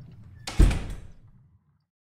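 A single heavy slam about half a second in, ringing out for about a second before cutting to silence.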